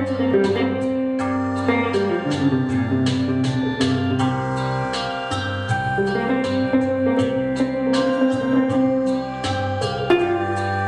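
Archtop hollow-body electric guitar played solo fingerstyle: a melody over sustained bass notes, with a steady run of plucked notes.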